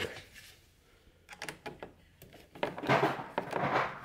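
A screwdriver working one of the hood-mounting screws on a snowmobile's plastic body panel. A few light clicks are followed, near the end, by about a second of louder scraping and rasping as the screw is turned and the tool knocks against the plastic.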